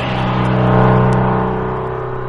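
Electronic dance music at a breakdown: the drums drop out and a sustained low synthesizer tone with strong overtones holds on, slowly fading.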